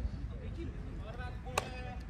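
A metal baseball bat striking a ball: one sharp ping with a short metallic ring, about one and a half seconds in, with faint voices around it.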